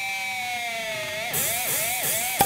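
Sustained distorted electric guitar note in a thrash metal intro, sinking slowly in pitch, then swooped down and back up three or four times in quick succession, the dive-and-return of a whammy bar. A bright hiss comes in partway through.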